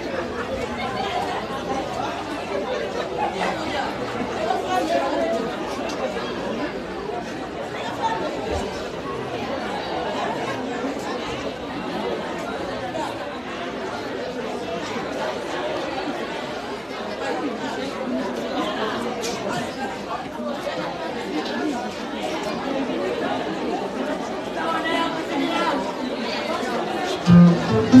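Crowd chatter: many people talking at once in a steady babble of overlapping voices. Right at the end, loud plucked-string music starts.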